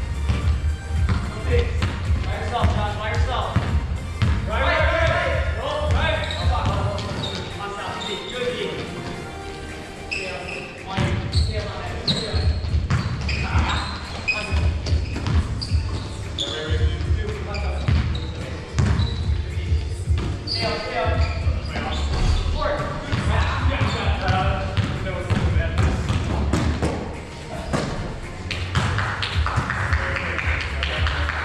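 A basketball bouncing on a hardwood gym floor during play, echoing in a large gym, with players' voices calling out and music playing in the background.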